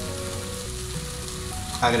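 Food sizzling steadily in a frying pan as broth is poured in from a cup, with soft background music of held notes.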